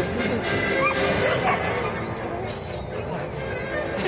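Background music for a dog dance routine, with short high yips from a border collie over it.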